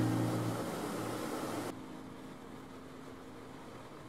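Motor yacht under way: a steady drone of engine and water rushing along the hull, dropping suddenly to a quieter level just before two seconds in.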